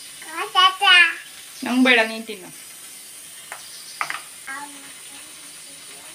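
A toddler vocalizing in a high-pitched voice: two drawn-out sounds in the first two and a half seconds, then a few short ones around four seconds in.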